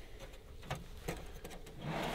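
A metal kitchen drawer being pulled open, faint: a couple of soft clicks about a second in, then a quiet sliding sound near the end.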